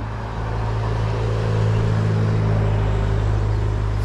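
A car passing on the road, its noise swelling and easing around the middle, over a steady low hum.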